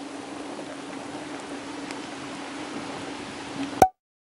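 Steady rain falling on a lake, an even hiss with a steady low hum underneath, ending in a sharp click shortly before the end.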